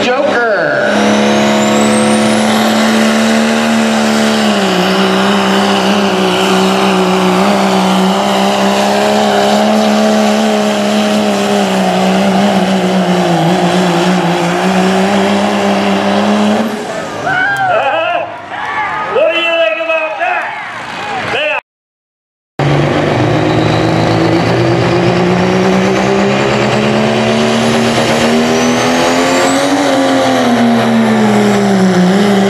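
Turbocharged diesel pickup engine under full load pulling a sled: a loud, steady drone with a high turbo whistle climbing in pitch a second or two in. The sound changes about 17 seconds in, then cuts out briefly. Another diesel pickup then builds RPM, its pitch and turbo whistle rising toward the end.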